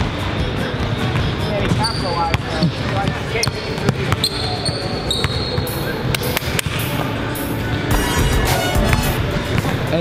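A basketball being dribbled and bouncing on a hardwood gym floor during play, with background music underneath.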